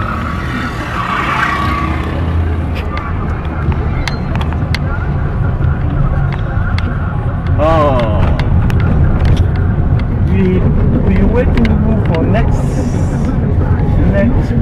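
Steady low rumble of a car's engine and road noise heard from inside the moving vehicle, with scattered clicks and knocks.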